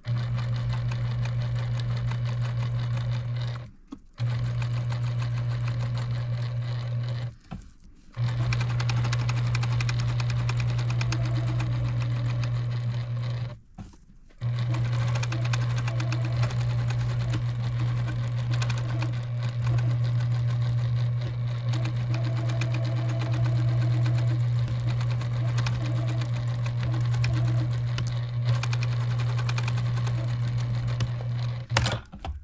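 Electric domestic sewing machine running steadily as it stitches vein lines into a fabric leaf to quilt it. The motor stops briefly three times, about 4, 8 and 14 seconds in, then starts up again.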